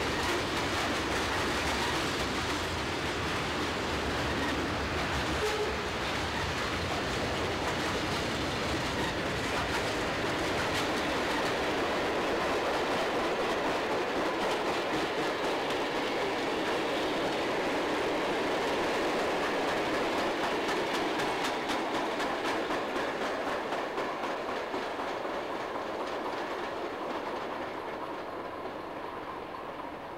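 Freight cars rolling past at close range, steel wheels clicking over the rail joints in a steady clatter. The sound fades over the last few seconds.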